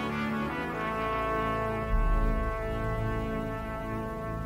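Slow brass music holding sustained chords, with a deep, loud low note swelling in about halfway through.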